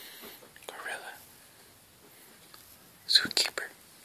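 A young child whispering, with a short, louder breathy burst about three seconds in.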